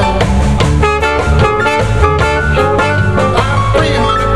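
Live blues band playing with no singing, electric guitar and drum kit to the fore over bass and keyboards.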